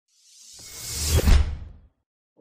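Whoosh transition sound effect that swells up over about a second, with a deep rumble at its peak, then fades out quickly.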